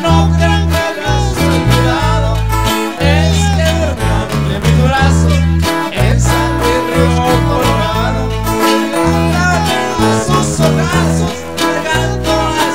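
A live band plays a Mexican song: two twelve-string acoustic guitars strummed over a deep bass line that changes notes every half second or so, with a man singing into a microphone.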